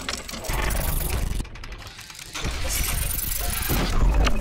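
Logo-intro sound design: noisy swells over a deep bass rumble. It dips briefly about halfway through, then builds again toward a louder hit right at the end.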